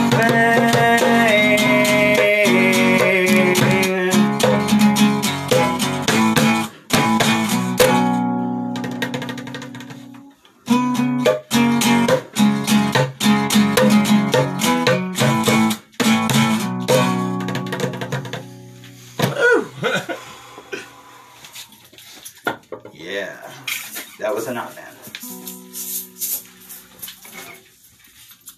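Electric guitar played through an amp, strumming sustained chords as an instrumental outro. The playing breaks off briefly about ten seconds in, then dies away around twenty seconds in, leaving only sparse, quiet sounds.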